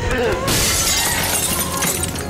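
Window glass shattering: a crash of breaking glass about half a second in that runs on for over a second.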